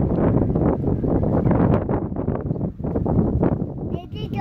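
Wind buffeting the microphone: a loud, gusty, uneven rumble.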